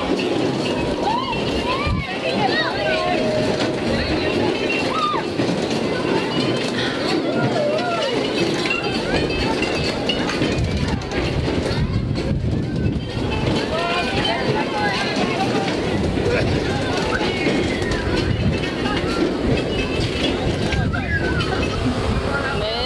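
Many overlapping voices and children's calls, none distinct, over a steady low rumble as a spinning cup ride turns.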